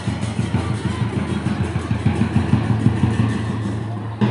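A vehicle engine running steadily close by with a low, fast-pulsing rumble, with music playing over it.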